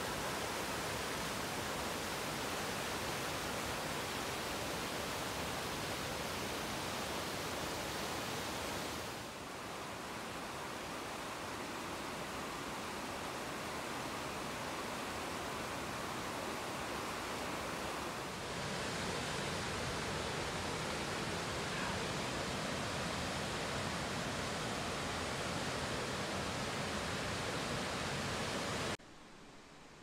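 Steady rush of river rapids pouring over flat rock ledges, an even hiss of water. It changes a little in level about a third and two-thirds of the way through, then drops away about a second before the end.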